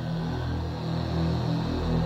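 Electronic background music, growing louder.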